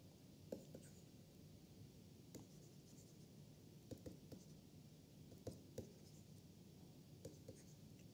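Faint, irregular taps and scratches of a stylus writing on a digital pen tablet, against near-silent room tone.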